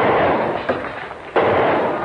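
Explosions on an old film soundtrack: two sudden blasts about a second and a half apart, each a loud burst of noise that trails off, cutting off suddenly at the end.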